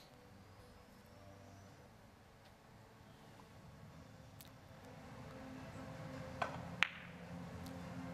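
Three-cushion billiards opening break shot: a few sharp clicks of the cue tip and the ivory-hard carom balls knocking against each other and the cushions, over a faint low hum in a hushed hall. The loudest two clicks come about half a second apart near the end.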